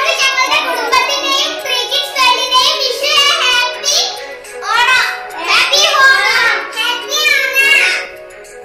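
Young children's voices, high and lively, over steady background music.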